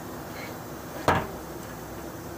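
A single sharp knock about a second in, from the fuel level sender assembly being handled and set against the workbench.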